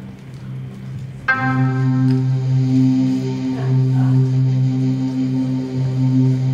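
Electronic keyboard playing sustained chords through an amplifier. A new, louder chord comes in about a second in and is held.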